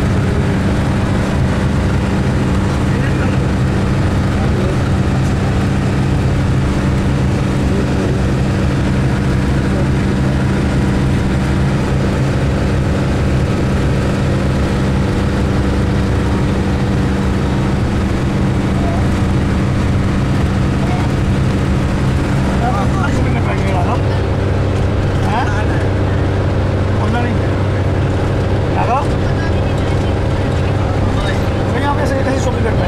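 Steady drone of a minibus engine and road noise heard from inside the cabin while driving. Faint voices of passengers come in over it in the last third.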